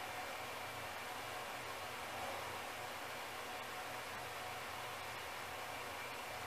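Steady background hiss with no distinct sounds standing out.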